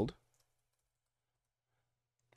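A man's voice trails off at the very start, then near silence with a few faint computer-keyboard typing clicks in the first half second.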